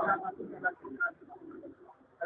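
Several voices talking in a crowd, loudest right at the start, with a low murmur of voices under them.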